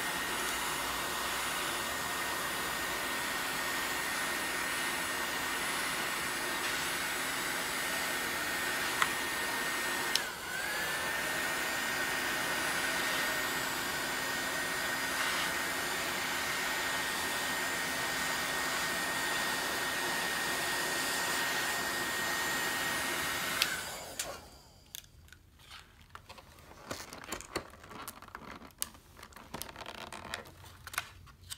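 Electric heat gun running steadily, its fan blowing with a high whine as it heats a clear plastic strip to soften it; the whine dips briefly about ten seconds in. It shuts off about 24 seconds in, leaving faint clicks and rustles.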